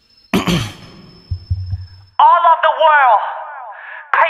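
A brief silence between songs, then the next K-pop track begins. There is a sudden hit about a third of a second in, with a thin high tone held under it. From about two seconds in comes a loud vocal line that bends up and down in pitch.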